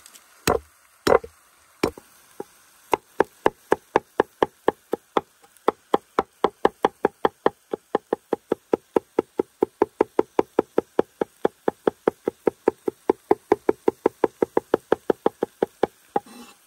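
Forged chef's knife chopping garlic on a wooden cutting board. A few separate heavy knocks come first, then from about three seconds in a steady run of quick chops, about five a second.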